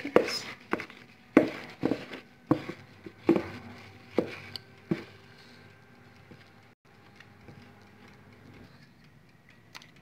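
A wooden spoon knocking and scraping against a mixing bowl as thick cake batter is emptied into a glass baking dish: about eight sharp knocks, irregularly spaced, stopping about five seconds in.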